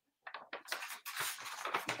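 Applause, a dense patter of hand claps that starts faintly and builds over the second half.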